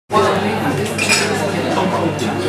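Club room ambience: glasses and dishes clinking amid crowd chatter, with a clink standing out about a second in and a steady low hum underneath.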